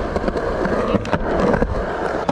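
Skateboard wheels rolling over rough concrete: a steady rumble peppered with many small clicks and ticks.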